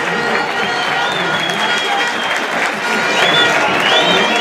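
Large stadium crowd cheering and applauding, a continuous wash of noise with shrill, gliding whistles sounding over it.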